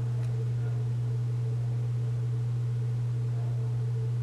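A steady low hum, unchanging throughout, with a fainter higher tone above it.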